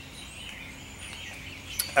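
Quiet outdoor background with a few faint, high bird chirps.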